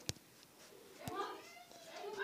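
Faint, drawn-out meowing of a cat in the background, starting about halfway through, with a single sharp click at the very start.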